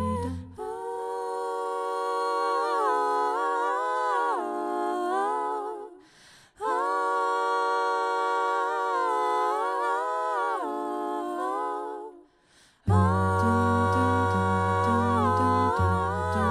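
Female a cappella vocal group singing sustained wordless chords in two long phrases, each trailing off into a brief pause. Near the start a low bass part drops out, and it comes back in abruptly about thirteen seconds in, under the voices.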